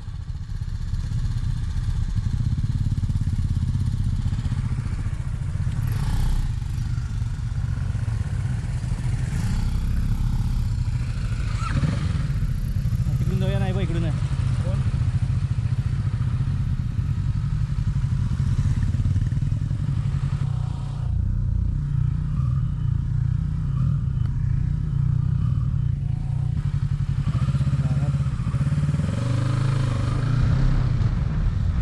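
Motorcycle engine running with a steady low rumble while stopped, then pulling away at low speed near the end.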